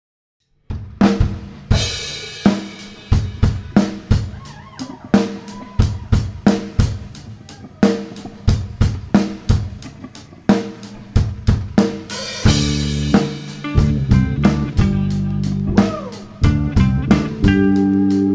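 Live rock band playing the instrumental intro of a song: a drum kit with snare, kick and cymbal hits over electric guitar, starting just under a second in. About twelve seconds in, the low end fills out as the bass and full band come in.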